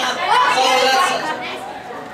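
A person talking, with chatter in a large hall; the talking stops after about a second and a half, leaving quieter background chatter.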